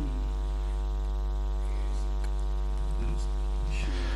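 Steady electrical hum, a low buzz with an even stack of overtones, holding at a constant level.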